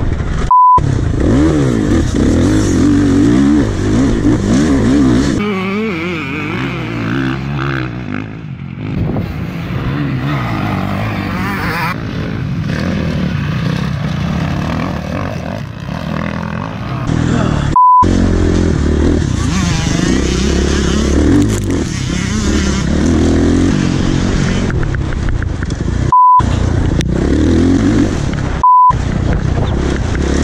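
Motocross bike engine revving up and down as the bike is ridden round a dirt track, heard close up from the bike itself. Four short, loud single-tone bleeps cut out the sound: about a second in, just past halfway, and twice near the end.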